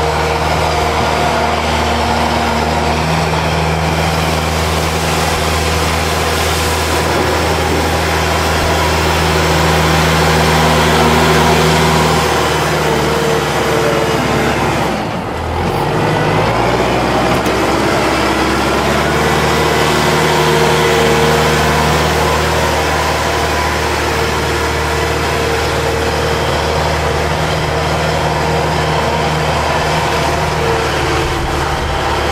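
Diesel engine of a compact Kubota cab tractor running steadily under load while it pushes wet, heavy snow with a front plow. Its pitch shifts partway through, with a brief dip, then it settles back to a steady note.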